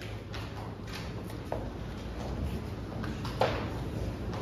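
Soft footsteps and a few light knocks as performers step up to and settle on piano benches, the most distinct about one and a half and three and a half seconds in, over a low steady hum.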